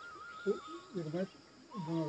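Faint, indistinct speech from a man in short snatches, over a thin, steady high-pitched tone.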